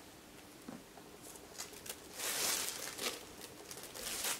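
Handling noise of a metallic chain-strap crossbody bag: a few light clicks from the metal chain links, then a rustling burst about two seconds in as the bag is lifted by its chain.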